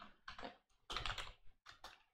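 Faint typing on a computer keyboard: irregular single keystrokes, with a quick run of clicks about a second in.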